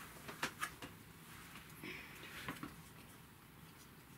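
Faint light taps of board-game pieces and tiles being set down on the game board: two small clicks about half a second in and two more about two and a half seconds in.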